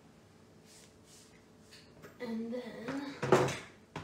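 A woman's voice, briefly and without clear words, then a short, sharp noise about three seconds in that is the loudest sound, and a brief click at the very end.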